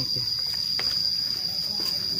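A steady, high-pitched insect drone, one unbroken tone, with a faint click a little under a second in.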